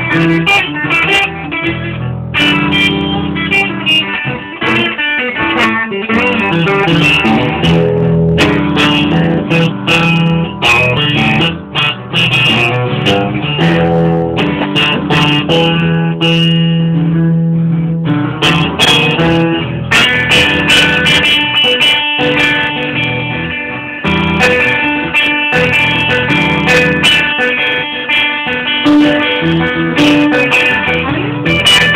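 Instrumental break of a live song: guitar playing picked and strummed lines over upright piano chords, with no singing.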